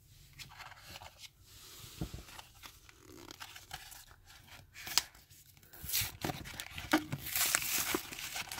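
A trading-card blister pack being torn open by hand: its paper-card backing rips and the plastic bubble crinkles and crackles. It starts as sparse rustles and clicks and grows into busier, louder tearing in the second half.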